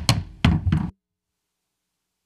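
Wooden gavel struck on its block a few times to close the hearing. The audio then cuts off to dead silence about a second in.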